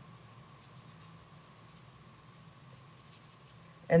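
Faint strokes of a watercolor brush on paper, over a steady faint high whine in the background.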